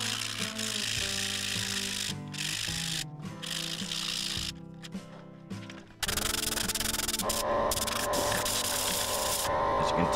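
Sandpaper on a block rubbing against a laminated hardwood mallet turning on a wood lathe, a hiss that comes and goes over background music. About six seconds in, a louder steady hiss of compressed air blowing dust off the turned wood takes over.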